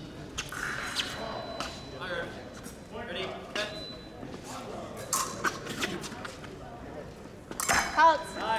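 Épée blades clinking and tapping against each other in scattered sharp clicks, with a louder flurry near the end as one fencer lunges, over the chatter of voices in a large echoing hall.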